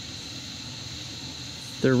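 Steady chorus of night insects, a constant high-pitched drone, with a man's voice starting near the end.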